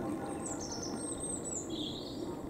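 Small birds chirping in short, high-pitched phrases over a steady low background hum of outdoor noise.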